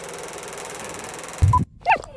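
A faint steady hiss, then a sudden low thump about one and a half seconds in, and just at the end a puppy starts a short high whine.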